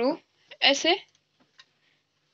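Speech only: a woman speaking Hindi in two short bursts, then a pause.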